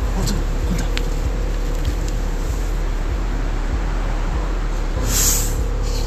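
A car close by, its engine and tyres making a steady noise, with a brief hiss about five seconds in.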